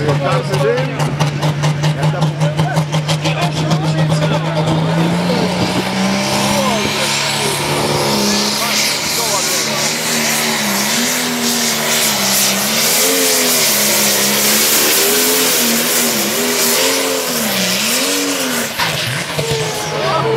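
Diesel engine of a pulling tractor running hard under heavy load as it drags a weight sled. Its pitch rises about five seconds in, then swings up and down as the engine labours against the sled.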